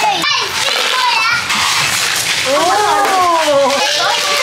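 Young children's voices, chattering and calling out as they play, with one long sliding vocal sound that rises and then falls over roughly the last second and a half.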